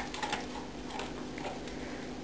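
A few faint, scattered clicks over quiet room tone with a low steady hum.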